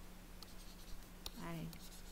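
Faint taps and scratches of a pen writing on a tablet, a few separate light clicks, over a steady low hum.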